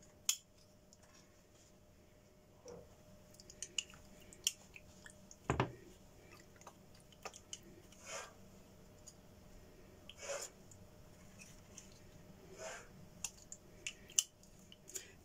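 Raw marinated chicken breast fillets being laid out and opened flat in a glass Pyrex baking dish: faint wet squelches of the meat, with scattered light clicks of a spoon against the glass.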